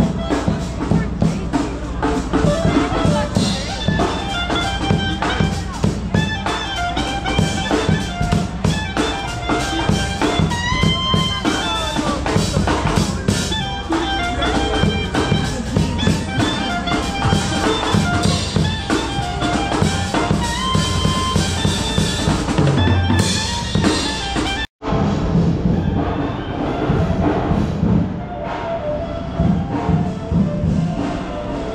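Street band music: a drum kit keeping a beat under a horn melody, with crowd chatter beneath. The sound cuts out for an instant near the end, then the music carries on.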